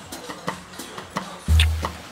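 Music: a pause between sung lines of a samba song, filled with light percussion ticks, with a deep low note coming in about one and a half seconds in.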